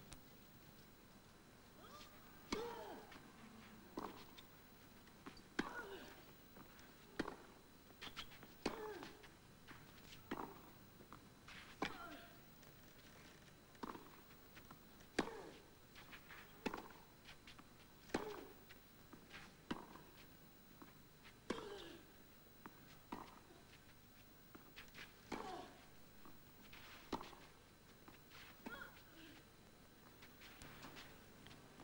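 Long tennis rally on clay: a racket strikes the ball about every one and a half seconds, back and forth, with a short grunt from the player on many of the shots.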